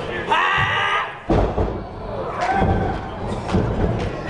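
A man's shout, then a heavy thud about a second in as a wrestler's body hits the wrestling ring mat, with crowd voices around it.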